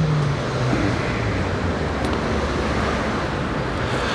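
Steady low rumble of road traffic, with a faint low engine-like hum fading out in the first half-second.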